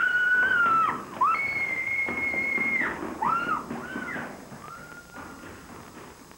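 Whistling: long held high notes joined by quick swoops up and down, growing fainter through the second half.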